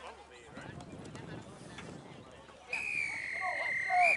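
Referee's whistle blown in one long, steady blast of about a second and a half, loudest at the very end, signalling the restart of play. Before it, spectators' voices chatter.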